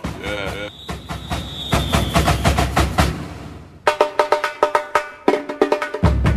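Music driven by percussion: a run of drum hits with a held high tone over the first couple of seconds, a brief dip in the middle, then a quick run of hits.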